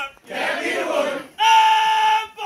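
A group of adults shouting and chanting together in a call-and-response song, then one voice holding a loud, high, steady note for about a second in the second half.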